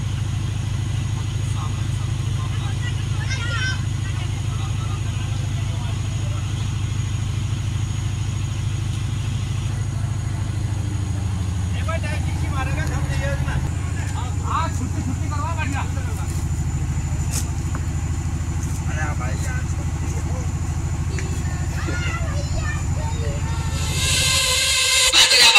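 Engine of a DJ sound truck running at a steady idle, a constant low hum whose note shifts slightly about halfway through, with faint voices now and then.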